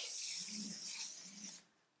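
Felt-tip marker drawn in one long stroke across flip-chart paper, a steady scratchy hiss that stops about a second and a half in.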